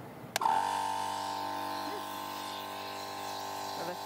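A switch clicks about half a second in and a GSPSCN 12-volt portable tire inflator (air compressor) starts and runs with a steady electric hum, air blowing freely out of its hose, which is not yet attached to a tire.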